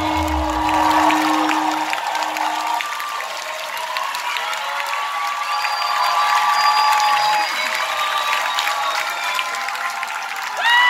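A rock band's last held note rings out and stops within the first three seconds, leaving a concert crowd clapping and cheering, with scattered shouts and whistles.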